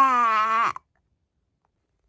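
A voice in a drawn-out whining wail, played as an upset toddler, held on one pitch and then falling off to stop under a second in; silence follows.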